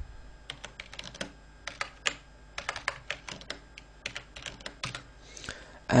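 Typing on a computer keyboard: irregular runs of key clicks as a terminal command is typed.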